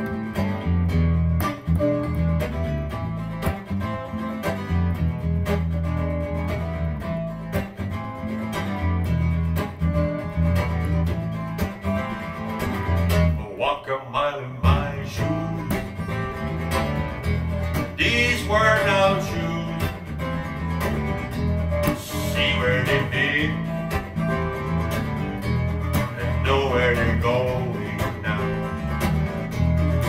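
Acoustic guitar strummed and electric bass played together, a bluesy groove starting on the count-in.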